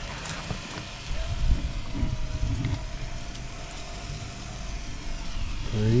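Outdoor background noise with a low rumble that swells about a second in and eases off after the middle.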